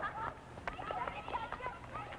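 Background ambience of a basketball game in a gym: faint, scattered voices with a few short knocks.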